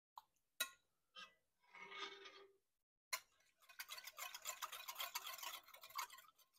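A few light clinks of a ladle on a glass bowl, then, from a little past halfway, a wire whisk ticking rapidly against the glass bowl as hot broth is whisked into sour cream to temper it so it won't curdle.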